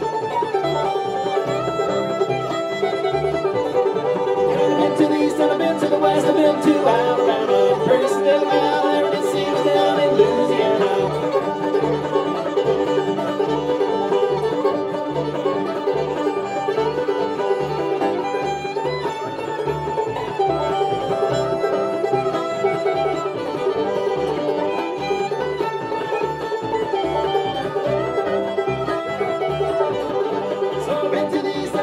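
Old-time string band playing an instrumental passage: fiddle carrying the melody over banjo and acoustic guitar, with upright bass keeping a steady beat.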